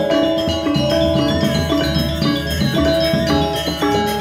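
Balinese gong gamelan playing slow lelambatan music: bronze kettle gongs and metallophones strike interlocking notes over a sustained low gong hum, while a bamboo suling flute carries a held melody above.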